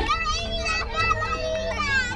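Several young children's high voices overlapping as they play together.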